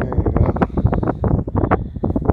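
Wind buffeting the microphone: a loud, uneven low rumble that rises and falls from moment to moment.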